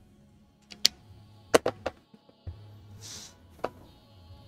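A few sharp clicks and taps of drawing tools being handled on a wooden desk as a pen is swapped for a brush, with a brief rustle about three seconds in, over faint steady background music.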